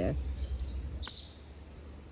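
Quiet outdoor backyard ambience: a few faint, high bird chirps in the first second over a low rumble on the phone's microphone, which stops about a second in and leaves only soft background hiss.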